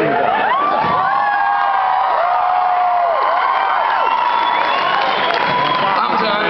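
Concert audience cheering and screaming, with many overlapping high-pitched voices holding long screams.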